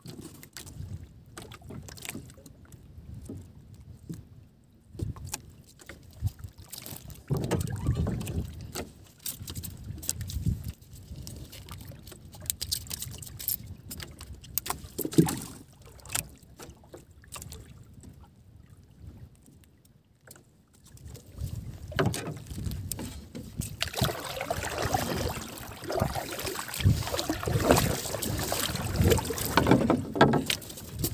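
Scattered knocks, clicks and rustles of hands working on a small wooden fishing boat as hooks are baited with small fish and line is tied to styrofoam floats. From about 22 seconds in, a steady noise of water against the boat grows louder.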